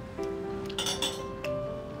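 Background music with steady held notes, and a few light clinks of a kitchen utensil against the steel pot about a second in.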